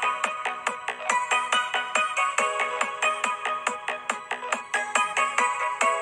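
Dance remix music track: a repeating melody of held notes over a fast, steady beat.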